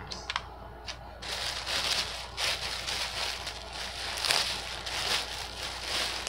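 Plastic packaging crinkling and rustling as a garment is handled and unwrapped, continuous and uneven from about a second in, after a few light paper taps.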